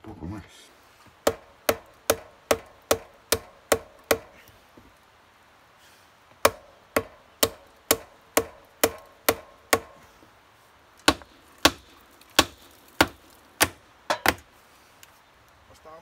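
Hammer blows on timber in three quick runs of about eight strikes each, two to three strikes a second, with short pauses between the runs; each blow is sharp with a brief ring.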